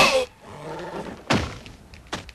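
Two heavy impacts: a loud bang with a falling, ringing tail at the very start, then a thud about a second and a half later, fitting a body falling onto canvas.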